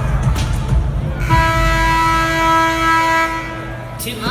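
Music over the arena PA, then about a second in a single steady horn tone sounding for about two and a half seconds over the low music before it stops.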